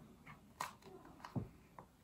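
Faint handling of a small plastic tube of moisturising cream as it is being opened: a few light clicks and a soft low knock about a second and a half in.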